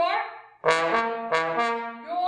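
Solo trombone playing: a short note that bends in pitch and dies away, then from about half a second in a held note re-attacked just after a second.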